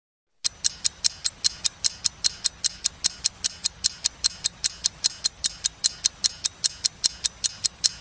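Clock-ticking sound effect of a countdown: sharp, even ticks at about five a second, starting just under half a second in.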